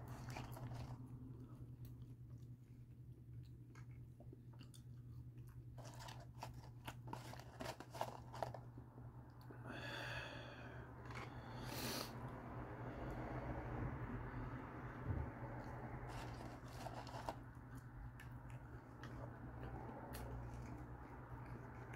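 Faint close-up chewing of French fries, with scattered small clicks over a steady low hum.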